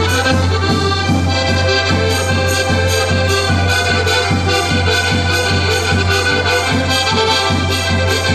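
Two accordions playing a lively traditional dance tune together, with a bass drum keeping a steady, quick beat under them.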